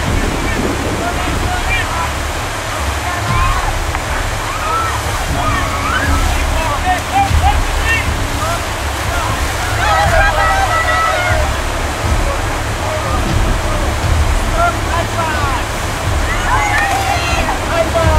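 Whitewater rapids rushing steadily around an inflatable raft, with a low rumble throughout, while the rafters shout and whoop at intervals.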